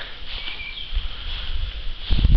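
Footsteps crunching irregularly through a thin layer of snow over dry leaves.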